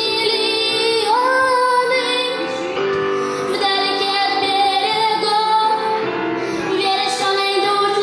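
A girl singing a song into a microphone over backing music, holding long notes.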